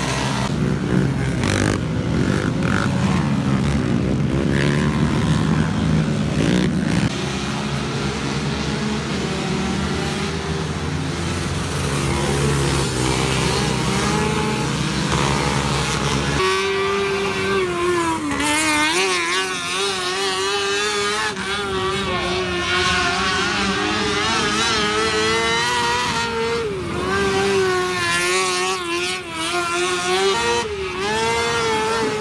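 Youth racing quads running laps on a dirt oval, their small engines droning and revving. About halfway through the sound changes abruptly to a higher, wavering buzz of small racing engines revving up and down.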